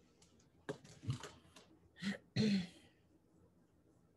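A woman clears her throat about a second in, then starts speaking.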